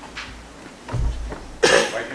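A person's single loud, short cough near the end, after a low thump about a second in.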